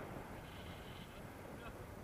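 Airflow rushing over an action camera's microphone during a tandem paraglider flight: a soft, even rush of noise.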